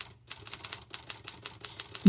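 Typing: a fast, even run of key clicks, like a typewriter or keyboard being typed on.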